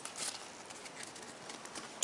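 Pokémon trading cards being handled and slid through the hands, faint soft rustling with a few light taps and clicks.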